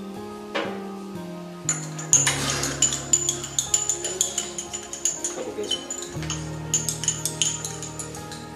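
A metal spoon clinking rapidly and repeatedly against a cup as a drink is stirred, starting about two seconds in, over background music with long held notes.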